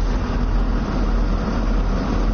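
A vehicle's engine running with a steady low rumble and noise.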